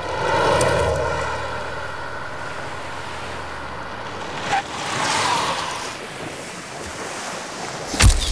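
Sea waves surging, a rushing sound that swells about half a second in and again around five seconds in.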